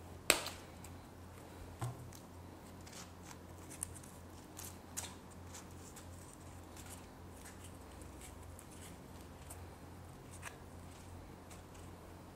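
Small hand-handling sounds of thread being wound and knotted around the stems of a handmade flower: a sharp click about a third of a second in, a softer one near two seconds, then scattered faint ticks and rustles over a low steady hum.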